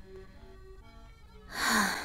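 Soft background music with held notes, then about a second and a half in a loud breathy sigh from a voice actor, falling in pitch.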